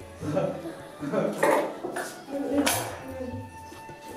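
Metal clinking and clattering in short strokes, with a woman laughing about a second and a half in.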